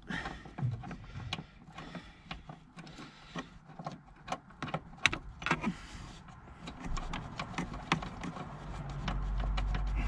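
A hand key working a T40 seat-rail bolt loose under a car seat: irregular metallic clicks and small scrapes as the key is turned and re-seated, with one sharper click about halfway and a short squeak just after. A low rumble builds near the end.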